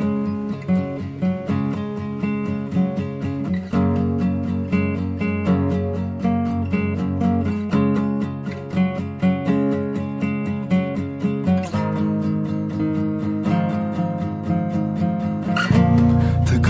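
Background music: guitar strummed in a steady rhythm, the chords changing about every four seconds, with a louder, deeper part coming in just before the end.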